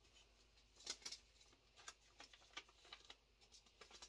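Near silence with faint, scattered crinkles and clicks of a paper seed packet being handled.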